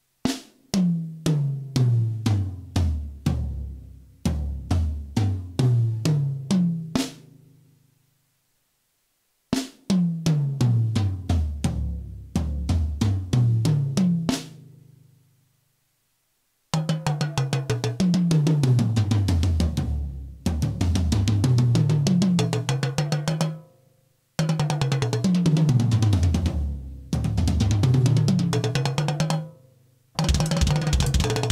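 Acoustic drum kit in a sound check: repeated fills rolling down the toms from high to low pitch, broken by two short dead silences about 8 and 16 seconds in. From about 17 seconds the fills run under continuous cymbal wash. The kit is heard as the mixer's mono output, sent through an Xvive U4 digital wireless in-ear monitor system into the camera.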